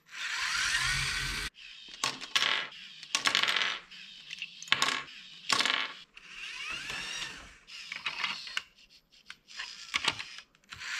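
Small LEGO electric motors whining through plastic Technic gears in short stop-start runs, the first rising in pitch as it spins up, with sharp clicks and clacks of plastic parts as the truck's side arm grips and lifts a LEGO bin.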